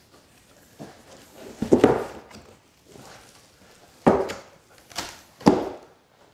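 A cardboard box being opened by hand: a few separate short scrapes and rustles as the taped top flaps are cut and pulled open.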